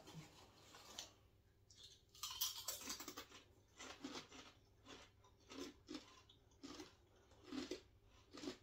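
Hand-cooked potato crisps crunched and chewed at close range, with short crackly bites at an uneven pace, the loudest about two seconds in. The crisps are thick and crunchy.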